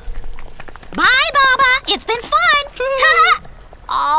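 A cartoon character's wordless voice: after a second of faint ticks, a run of short vocal sounds whose pitch wavers quickly up and down.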